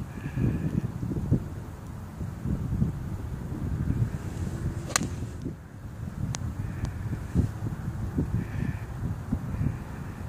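Wind buffeting the microphone, with one sharp click of a golf club striking a ball about five seconds in and a couple of fainter clicks soon after.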